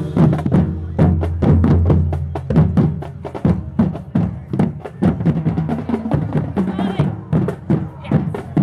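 Marching band drumline playing a cadence on the move: a quick, steady stream of sharp drum and stick hits over bass drum strokes.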